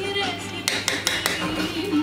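A spoon clicks several times against a stainless steel pot as rice and frozen peas are stirred, over background music.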